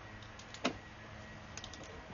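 Faint steady low hum with a single short click about two-thirds of a second in and a few faint ticks near the end.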